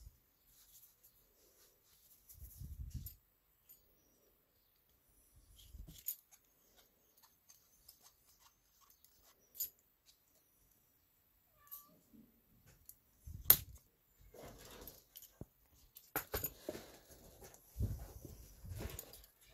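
Mostly quiet, with scattered small clicks and taps from hands handling a metal clay extruder and clay. A sharper knock comes about two thirds of the way through, and the handling grows busier with several clicks near the end.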